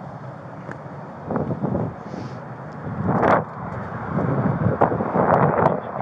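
Wind and handling noise on a body-worn camera's microphone: rustling, bumping and rubbing as the camera moves against the wearer's clothing, in irregular swells with a few sharp clicks. The loudest surge comes about three seconds in.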